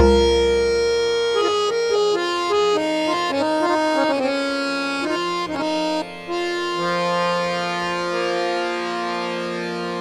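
Samvadini (harmonium) playing a short melodic phrase of held reed notes, then holding one sustained chord that fades out as the piece closes. A deep tabla bass-drum stroke rings out at the very start.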